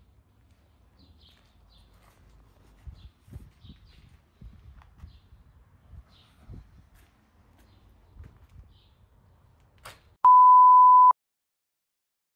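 A loud, steady electronic beep at one pitch, lasting just under a second, near the end, after a few seconds of faint background sound with soft thumps and a few faint chirps.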